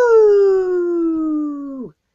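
A man's voice giving one long howl-like cry, high-pitched at first and sliding slowly downward, held for about two seconds before breaking off.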